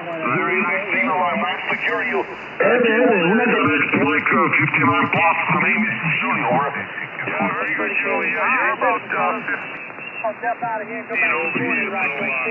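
Voices of amateur radio operators on the 40-metre band, received by two software-defined radio receivers playing at the same time. The speech overlaps and sounds thin and narrow, with no deep bass or high treble, and gets louder about two and a half seconds in.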